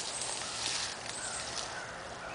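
Footsteps and rustling of leaves and brush as people push through dense undergrowth, with faint, short high chirps of insects in the background.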